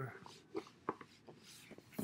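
A few faint, scattered clicks and taps from a handheld tablet or camera being handled and moved, after the last word of speech dies away.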